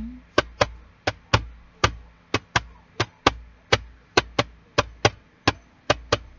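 A quick run of sharp taps, about three a second in an uneven rhythm, some close together in pairs, over a faint steady hum.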